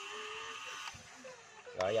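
Electric motors of a remote-control excavator model whining steadily as the arm moves, cutting off about a second in. A spoken word follows near the end.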